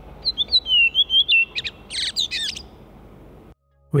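Redwing singing: a run of whistled notes stepping down in pitch, then a short squeaky twitter, over a steady hiss of traffic and other background noise. The sound cuts off suddenly shortly before the end.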